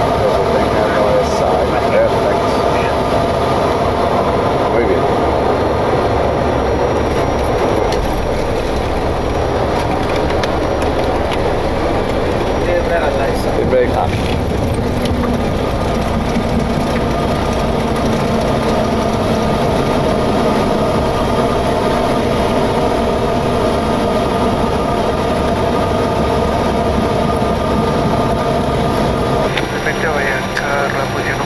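Boeing 727 flight-deck noise during a landing: steady engine and airflow noise over the approach, a thump about 14 seconds in as the main gear touches down, then a new low steady engine note during the rollout.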